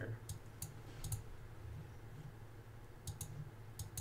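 A few faint computer mouse clicks, spaced out early on and then a quick couple near the end, over a low steady hum.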